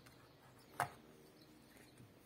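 A single short, sharp click about a second in as a plug-in circuit board is worked loose from its edge-connector slot on the mixer's motherboard.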